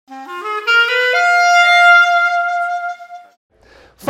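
Music: a wind instrument plays a quick stepped run upward to a high note, holds it for about two seconds, and lets it fade out a little past three seconds in.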